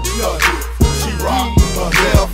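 2000s hip-hop track from a DJ mix: a heavy kick drum about twice a second under hi-hats and short pitched melodic or vocal sounds, with no rapped lines here.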